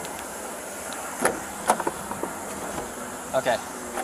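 Steady outdoor background noise, with a few sharp clicks a little over a second in and again about half a second later.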